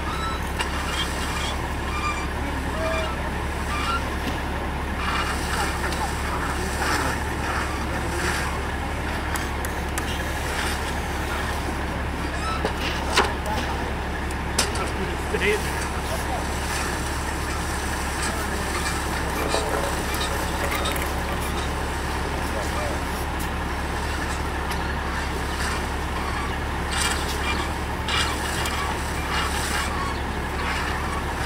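A steady low engine rumble, like a heavy vehicle idling, runs throughout, with a few sharp knocks about halfway through.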